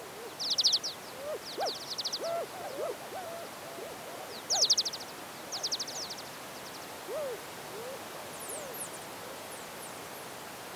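Bird calls from a nature recording opening a nu-disco track, with no beat yet. Four bursts of quick high trills, each about ten rapid notes, come with scattered short rising-and-falling chirps lower down, over a steady hiss.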